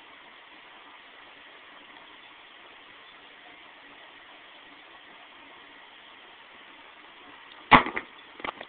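Steady faint hiss, then near the end a sudden loud plastic clatter as an action figure is slammed down onto a toy wrestling ring.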